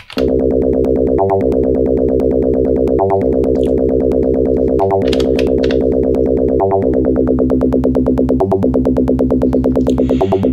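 Elektron Syntakt playing a rolling synth bassline from one of its internal synth engines: a fast, even stream of repeated low notes, with short breaks about every two seconds.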